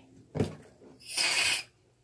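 Aerosol shaving cream can spraying a short hiss lasting about half a second, just after a light knock.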